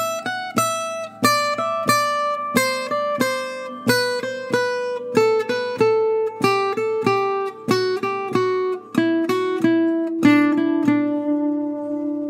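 Single-note line picked on a gypsy jazz acoustic guitar, played down-up-down in quick three-note figures. The line steps down in pitch across the strings and ends on one held low note near the end: the whole embellished G major scale idea.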